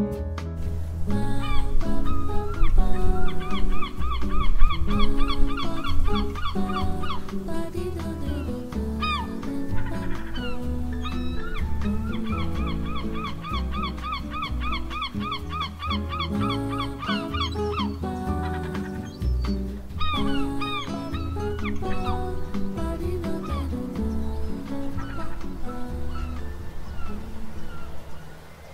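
Background music with a steady pulsing bass and sustained notes, with a fast, evenly repeated high figure that comes in twice.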